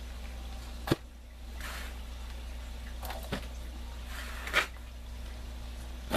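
Loose soil mix being handled and dropped by hand into a plastic barrel: soft rustling with a few brief knocks, over a steady low hum.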